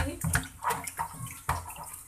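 Water sloshing and splashing in a plastic bowl in a steel sink as hands rub and rinse a fish, in irregular uneven splashes.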